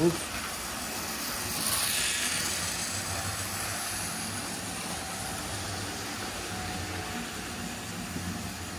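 Model trains running on a layout: a steady whirr of small electric motors and wheels on the track, growing louder about two seconds in as a train passes close, then easing back.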